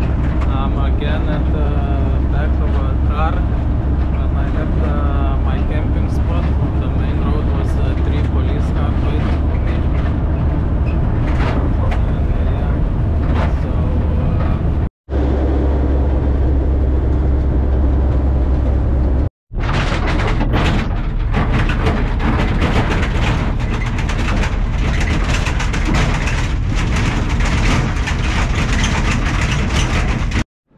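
Wind and road noise in the back of a moving truck at highway speed, over a steady low engine drone. The noise cuts out briefly twice about halfway through.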